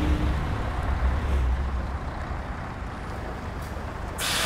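Low, steady engine rumble of a bus, growing gradually quieter.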